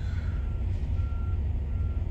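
A backing vehicle's reverse alarm beeping faintly and evenly, about three beeps in two seconds, heard from inside a truck cab over the louder steady low rumble of an idling engine.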